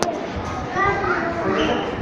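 Background chatter of children's voices in a busy classroom, with a single sharp click right at the start.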